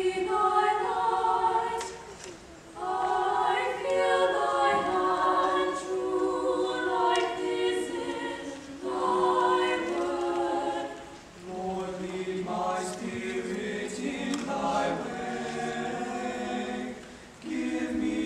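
Mixed chamber choir singing sustained choral phrases in harmony, with short breaks between phrases; lower voices enter about eleven seconds in.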